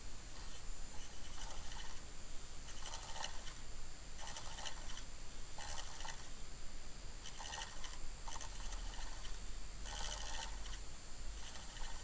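A small DC motor's bare shaft drives the rim of a thin plastic turntable platter by friction, over a steady low hum. A rubbing rasp recurs about every second and a half as the platter turns. The drive is not yet smooth, which the builder means to cure by padding the motor shaft with heat shrink.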